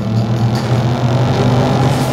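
A car driving by under power: a steady low engine note with road noise that builds as it approaches.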